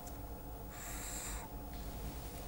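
Marker pen drawn across paper in one stroke, a short squeaky scratch lasting under a second, over a faint steady low hum.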